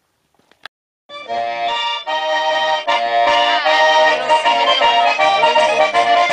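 Lively Italian folk saltarello led by an accordion, starting about a second in after a brief near silence.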